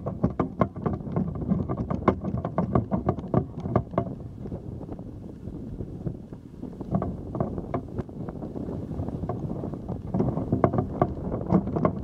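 Camera on a raised camera pole being handled and swung: dense irregular clicks and knocks over a low rumble, with wind on the microphone, easing off briefly in the middle.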